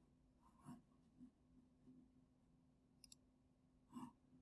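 Near silence: faint room tone with a low hum, broken by a few soft clicks from a computer mouse, two quick ones about three seconds in.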